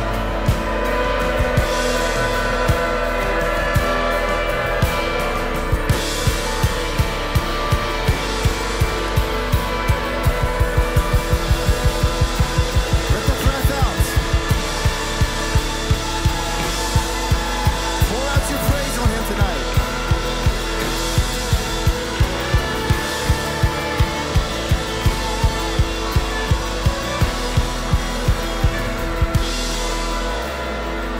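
Live worship band playing an instrumental chorus, drum kit prominent with a steady beat that quickens into rapid hits in the middle, while shofars blow wavering blasts over the music.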